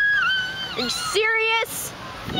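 High-pitched voices calling out and squealing without words: one long, high held cry with a wavering pitch, then a shorter, lower one.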